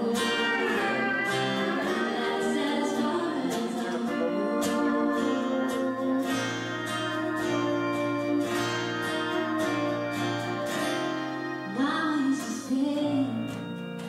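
Live band performance: a woman singing into a microphone over a strummed acoustic guitar and long held instrumental notes, her voice most prominent early on and again near the end.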